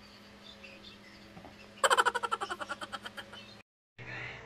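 A small animal's call: a rapid series of sharp chirps, about ten a second, loud at first and fading over nearly two seconds. The sound then cuts off completely near the end.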